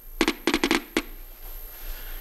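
Geiger counter clicking at an irregular rate as it picks up radiation from thorium welding rods: about half a dozen sharp clicks in the first second, then only scattered ones.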